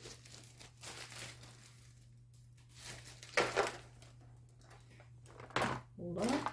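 A plastic zip-lock bag crinkling as it is handled and sealed, in a few short rustles with the loudest about three and a half seconds in.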